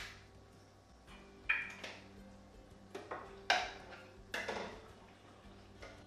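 A metal spoon scraping and knocking against cookware about five times, each stroke short, over a faint steady hum.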